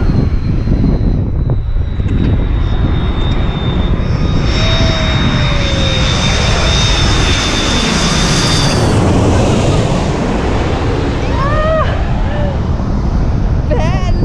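KLM Airbus A330-300 on final approach passing low overhead, its General Electric CF6 turbofans giving a steady high whine under a rush that builds over a few seconds and drops away suddenly as the jet goes over, about nine seconds in. Steady wind noise on the microphone runs underneath.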